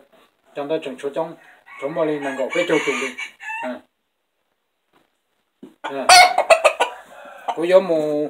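Rooster crowing once, loudly, about six seconds in, after a short quiet spell.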